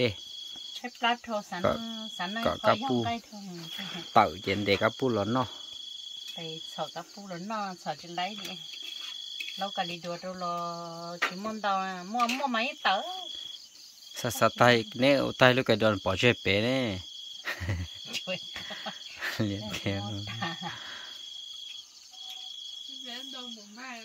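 Crickets trilling at a steady high pitch in long stretches broken by short pauses, with people talking over them.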